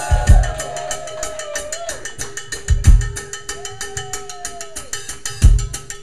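A live drum kit played between songs: a fast, even ticking of sticks on cymbal or rim, about eight a second, with three heavy bass drum hits spaced a couple of seconds apart. A held note and a few sliding tones sound over it.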